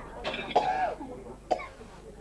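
A person coughing: a rough cough with a short voiced tail, then a second short, sharp cough about a second and a half in.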